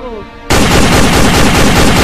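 Automatic-gunfire sound effect: a loud, rapid, continuous burst of shots that starts abruptly about half a second in and is still going at the end.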